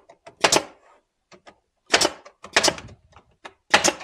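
Nail gun firing nails into cedar picket boards: four sharp shots, unevenly spaced, with small clicks of handling between them.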